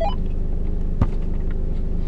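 Engine of a stationary 4x4 idling with a steady low hum, and a single short click about a second in.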